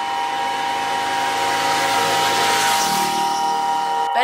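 A rushing whoosh sound effect that swells for nearly three seconds and then thins out, over steady droning tones.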